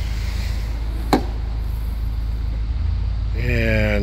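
A single sharp click about a second in as the rear barn-door latch of a 2015 MINI Cooper Clubman releases and the door swings open, over a steady low hum.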